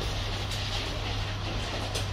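Steady indoor background noise: a constant low hum under an even hiss, with no speech.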